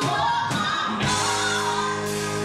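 Live band performing: a woman's sung vocal line over piano, bass guitar and keyboards, with held bass notes coming in about a second in.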